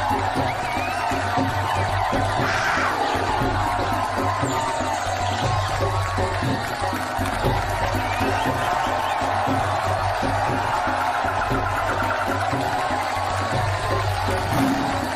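Loud dance music with a steady bass beat, over a studio audience cheering and whooping.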